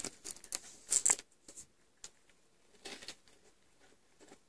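A tortoise and a cat eating from a slice of watermelon: short, wet, crisp crunches of bites into the juicy flesh, irregular, with a louder cluster about a second in and another near three seconds.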